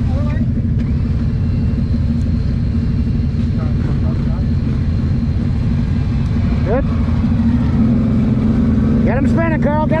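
An ATV engine running steadily, getting a little louder over the last few seconds.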